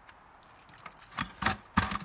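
A straightened wire coat hanger being fed through small holes drilled in a plastic five-gallon bucket: a few light clicks and scrapes of metal wire against plastic in the second half.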